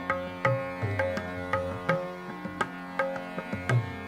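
Hindustani classical accompaniment between vocal phrases: tabla strokes about three a second over a steady sustained drone.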